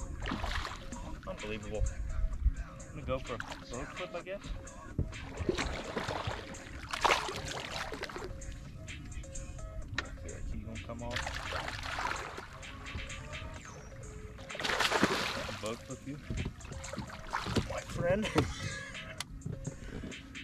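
Background music with a voice in it, over several hazy rushes of water splashing as a hooked largemouth bass is fought at the surface beside the boat.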